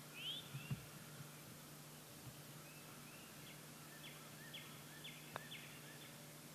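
Birds chirping faintly over quiet outdoor ambience, with a run of repeated short rising chirps in the second half. A soft low thump comes under a second in, and a single sharp click comes about five seconds in, from a putter striking a golf ball.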